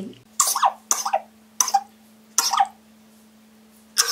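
A woman coughing in a fit: four separate harsh coughs within about three seconds.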